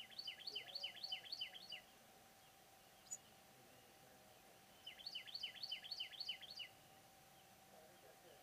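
A small bird gives two rapid runs of about eight quick chirps each, every chirp dropping in pitch. The first run comes at the start and the second about five seconds in, with a single short high chirp between them, over a faint steady hum.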